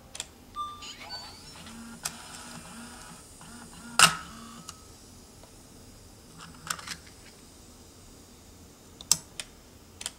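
Handling noise from a camcorder: scattered sharp clicks and knocks, the loudest about four seconds in and a few more near the end, with a couple of short faint beeps near the start.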